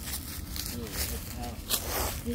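Faint, indistinct voices talking over a low rumble of wind and handling noise, with one sharp click near the end.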